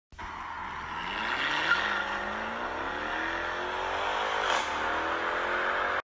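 Car engine accelerating hard, its pitch climbing steadily, with a short break about four and a half seconds in before it climbs on, then cutting off suddenly.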